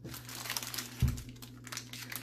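Plastic food packaging crinkling as bagged ingredients are picked up and handled, with one dull thump about a second in.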